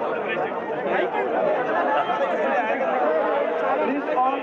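A dense crowd of many people talking over one another at once, an indistinct, steady babble of voices with no single speaker clear.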